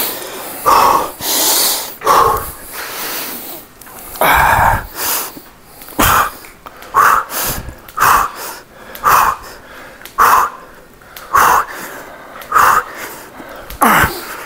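A man breathing out hard in short, forceful puffs, about one a second, with the reps of a heavy overhead EZ-bar triceps extension.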